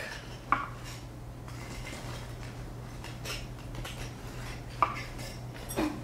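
A few scattered light metallic clicks and clinks of small fly-tying tools being handled at the vise, the sharpest one shortly before the end, over a low steady hum.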